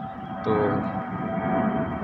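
Jet aircraft passing overhead: a steady engine drone with a faint whine, growing louder about half a second in.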